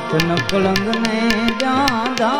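Live Gujarati devotional bhajan: harmonium holding sustained chords under a sung line that glides up and down, with percussion keeping a quick, steady beat.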